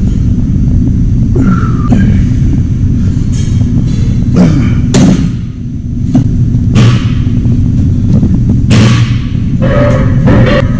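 A loud, steady low rumble with a series of sharp thuds, the clearest about four and a half, five, seven and nine seconds in.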